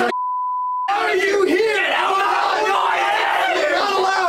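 A censor bleep, one steady beep lasting most of the first second, then a group of teenagers yelling and shouting over one another.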